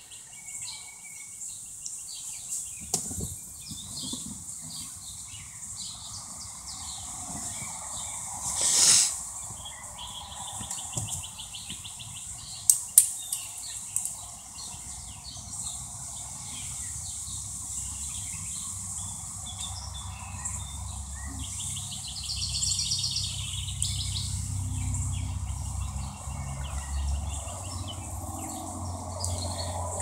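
Outdoor background with scattered short, high bird-like chirps. A loud rushing noise comes about nine seconds in, a few sharp clicks follow a few seconds later, and a low rumble sets in during the second half.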